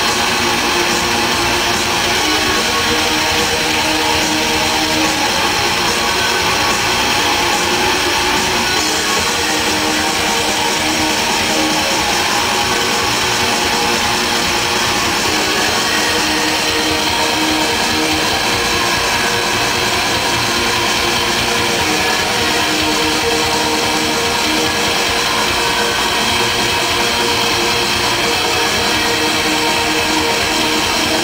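Black metal band playing live, loud and continuous, with distorted electric guitars, bass and drums, heard from within the audience.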